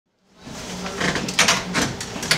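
Handling noise near a table microphone: rustling and a few sharp knocks and clicks, the loudest about one and a half seconds in, over a low room murmur.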